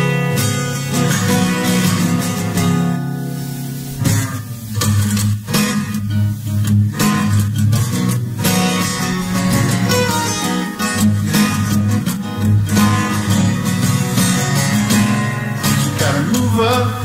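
Acoustic guitar strummed in a steady rhythm, an instrumental break between the sung lines of a live song.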